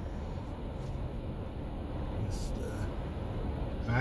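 Steady low road and tyre noise inside the cabin of a 2021 Toyota Sienna hybrid minivan cruising at about 35–40 mph.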